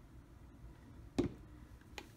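Low steady room hum with one sharp click about a second in, from handling the tablet and its packaging.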